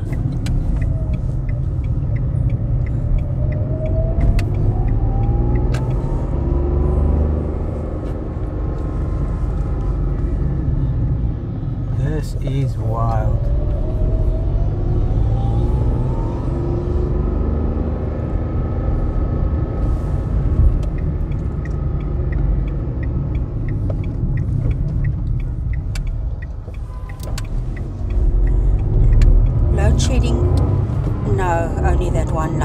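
Car cabin noise while driving through city streets: a steady low rumble of engine and tyres, with the engine note rising as the car accelerates, once in the first few seconds and again about midway.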